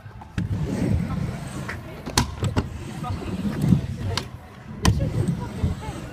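Stunt scooter rolling on a skatepark ramp, with sharp clacks of the scooter striking the ramp, the loudest about two seconds in and again near five seconds.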